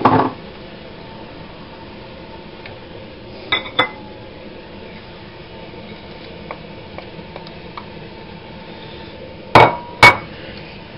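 Bowls and a wooden spoon knocking against a frying pan as food is tipped in. There is a loud clatter at the start, two ringing clinks about three and a half seconds in, a few light taps, and two more loud knocks near the end, over a steady background hiss.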